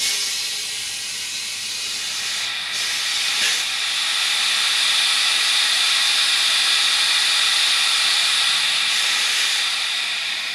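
Compressed air hissing steadily from an air-line blow gun into a heated motorcycle fuel tank through its filler opening, pressurising the tank to push out a dent. The hiss starts abruptly and grows a little louder partway through.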